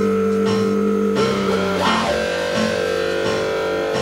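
Electric guitar playing blues, with long held notes over a changing low bass line.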